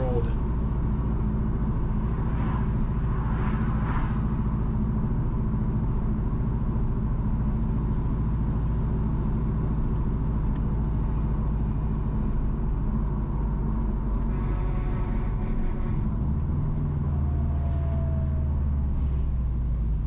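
Steady low rumble of a car's engine and tyres heard from inside the cabin while driving along a highway. The low engine note changes near the end as the car approaches a turn.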